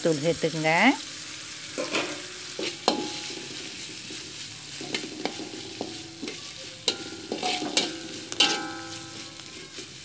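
Vegetables frying in oil in a stainless steel wok, sizzling steadily while a metal slotted spatula scrapes and taps against the wok to stir them. A short squeal with a bending pitch sounds in the first second, and a few brief squeaks of metal on metal come later.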